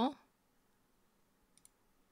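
A spoken word trails off, then a couple of faint, quick computer mouse clicks about a second and a half in, over quiet room tone.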